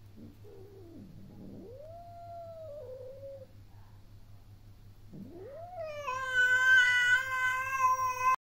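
Domestic cat meowing twice: first a faint, drawn-out meow that dips in pitch and then rises, then, about five seconds in, a much louder, long meow that swoops up and holds on one pitch to the end.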